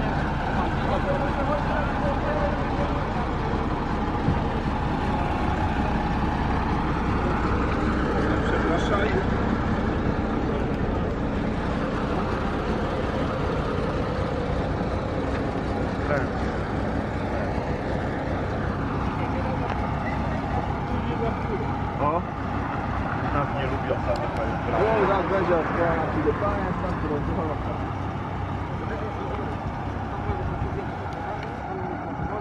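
Diesel engine of an Ikarus 280 articulated city bus running steadily as the bus idles and then moves off, with people talking over it.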